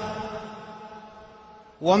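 A man's speaking voice dying away in a long reverberant tail, the last pitched tone fading steadily for nearly two seconds; his next word starts near the end.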